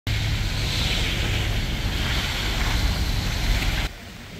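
Street traffic on a snow-covered road with wind rumbling on the microphone: a steady low rumble under a hiss. It cuts off abruptly just before the end.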